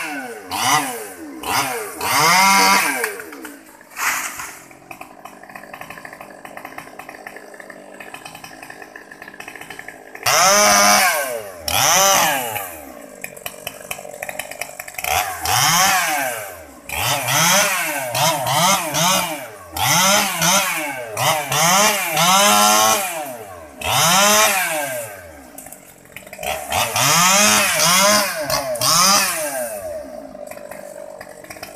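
Small two-stroke top-handle chainsaw, a Stihl 020T, cutting mango wood. It is revved up again and again, each rev rising and then falling in pitch. Between the bursts it drops back to a quieter idle, longest in a stretch of several seconds early on.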